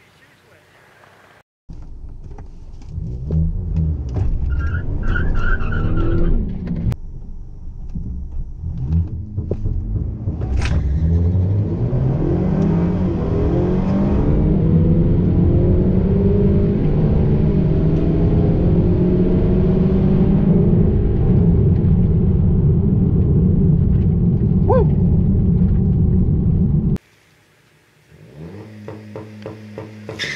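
Honda Accord Sport's 2.0-litre turbo four heard from inside the cabin. It revs in uneven bursts, then runs at full throttle from about ten seconds in, its pitch climbing and then holding as a loud steady drone, until the sound cuts off suddenly near the end.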